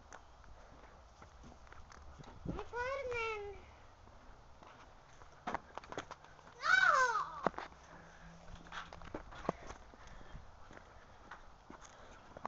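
A high voice calling out twice without words: a short rising-and-falling whoop a few seconds in, then a louder falling yell about a second long midway through. Scattered light knocks sound between the calls.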